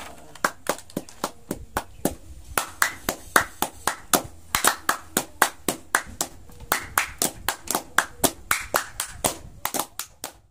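A small group of people clapping their hands: sharp, separate claps, several a second and out of step with one another.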